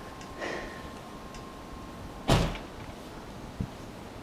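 A car door shutting: one heavy thump about two seconds in. A faint steady whistle stops at the same moment.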